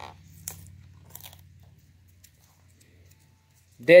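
Fingernails picking and scraping at the plastic wrap and seal sticker of a DVD case: faint scattered crinkles and clicks that thin out after about a second and a half.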